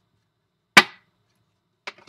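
A single loud, sharp smack of a hand about a second in, dying away quickly, followed by a faint click near the end.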